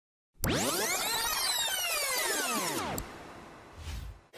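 Electronic transition sound effect: a dense cluster of tones sweeping up and then back down over about two and a half seconds, followed by a softer fading tail.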